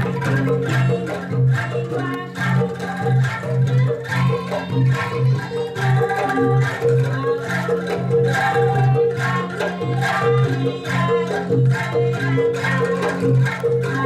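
Angklung ensemble playing a steady, rhythmic tune: the bamboo tubes are shaken into rattling chords, pulsing note by note. Kendang drum and bronze bonang kettle gongs keep the beat underneath.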